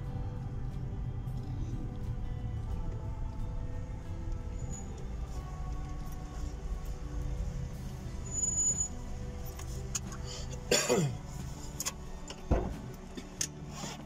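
A car's engine idling with a steady low rumble under soft music, the rumble dropping away about ten and a half seconds in with a short falling whine, then a single low knock.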